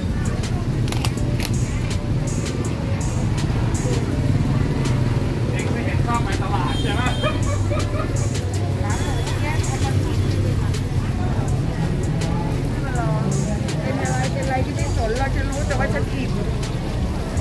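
Busy open-air market ambience: people talking nearby in snatches over a steady low rumble, with scattered clicks and knocks.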